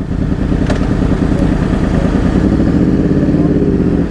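Several superbike engines running together at a standstill, a steady blend of exhaust notes. In the last second one engine's pitch rises as its revs pick up.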